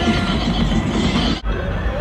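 Loud festival din of music and voices around passing art cars, with wavering whoop-like pitched sounds over it. It breaks off abruptly about one and a half seconds in and resumes as a different mix of voices and engine noise.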